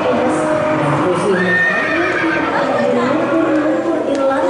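A horse whinny played over the exhibit's sound system, a high, quavering call, with people's voices in the background.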